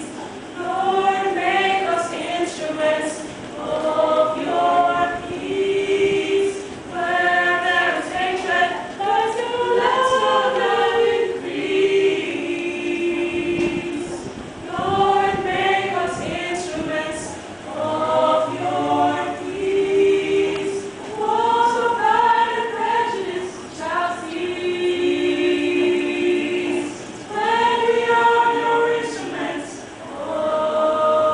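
Young women's choir singing a cappella, in sung phrases with short breaks between them.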